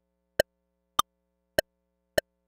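Metronome clicks from an Elektron Octatrack and Bitwig Studio playing in sync, about 100 beats a minute, each beat landing as one click with no drift between them. Every fourth click is higher-pitched, marking the start of a bar.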